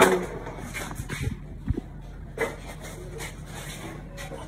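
A voice breaks off right at the start, then faint rustling and handling noise with two soft knocks a little over a second in.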